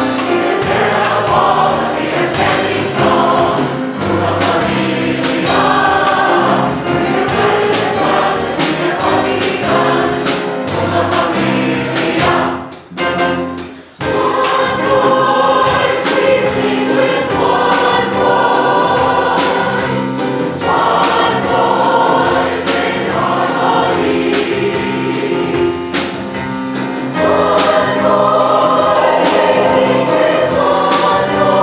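A mixed-voice choir of women and men singing in harmony, accompanied by piano and drum kit. There is a brief break about twelve seconds in, after which the full choir comes back in.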